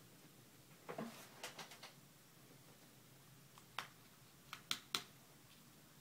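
Faint small clicks and ticks of tiny metal screws and a small Phillips screwdriver being handled over an opened iPod Touch: a cluster of light ticks about a second in, then four sharper clicks a little before the fifth second.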